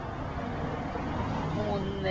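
Street background noise: a steady traffic hum with faint voices murmuring nearby.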